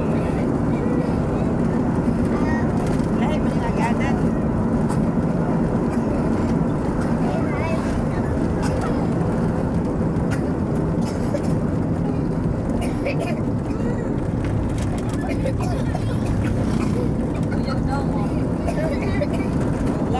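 Engine and road noise of a moving passenger vehicle heard from inside by an open window: a steady low rumble and drone with rushing air, holding an even level throughout.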